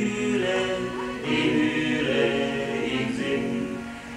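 Male vocal quartet singing a German folk song in close harmony on held notes, accompanied by a piano accordion. A phrase ends and the sound dips near the end before the next phrase begins.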